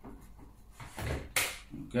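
Plastic parts of a Vorwerk Kobold VK7 cordless vacuum being pushed together: a low knock about a second in, then a single sharp click as the floor brush locks into place on the body.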